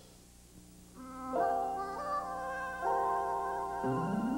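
Short musical tag of a television commercial: after a near-silent first second, a few held notes start and change pitch in steps.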